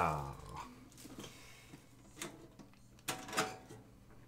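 Tin lunchbox being handled and lifted by its metal handle: a few light clicks and knocks of the handle and tin body, spread across a few seconds after a short exclamation.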